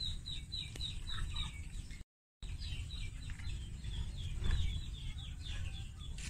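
A bird chirping repeatedly: a steady run of short, high chirps, about four a second, over a low rumble.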